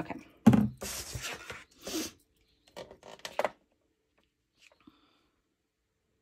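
Paper and cardstock being handled and pressed down on a scoring board. A knock is followed by about a second and a half of rustling and rubbing, with a shorter rustle at two seconds and a few light taps around three seconds in. After that only a couple of faint small sounds are heard.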